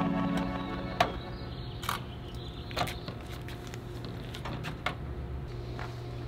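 Keyboard background music with an organ sound fades out about a second in. A steady low hum follows, with a handful of short, sharp clicks scattered through it.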